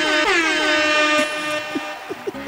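DJ-style air horn sound effect. Its last long blast is held and then fades out in the second half.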